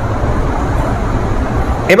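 Steady low rumbling background noise, with no distinct events.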